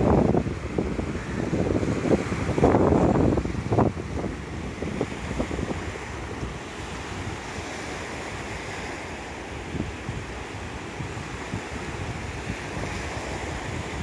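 Sea surf breaking and washing up a sandy beach, with wind buffeting the microphone in gusts during the first few seconds, then a steadier wash of waves.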